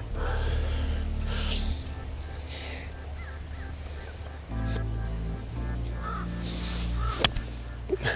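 Background music with a steady bass line. About seven seconds in comes a single sharp click: a golf club striking the ball on a fairway approach shot.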